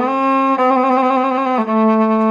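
Homemade hammer violin bowed in slow, sustained notes with a slight vibrato, moving to a lower held note about one and a half seconds in.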